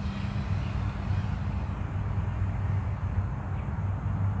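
A steady low hum over even outdoor background noise, with no distinct events.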